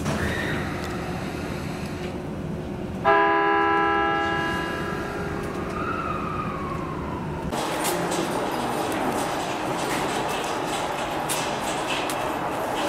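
A train horn sounds one short blast about three seconds in, heard from inside a subway car. A tone falling in pitch follows a few seconds later, then steady noise with scattered clicks.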